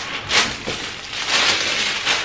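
Thin white packaging crinkling and rustling as it is handled and pulled off a small wallet, with a sharp crinkle about a third of a second in and denser rustling a little past the middle.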